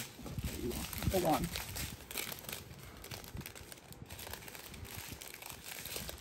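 Small plastic bags of diamond-painting drills crinkling and rustling as they are handled, with a brief mumbled voice about a second in.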